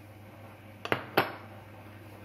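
Glass bowls knocking against each other: two or three light clinks about a second in, the last one louder with a short ring.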